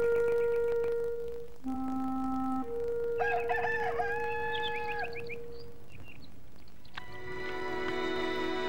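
A rooster crowing once, about three seconds in, a wavering call lasting nearly two seconds, over soft flute music of long held notes. Fuller music with many held notes swells in near the end.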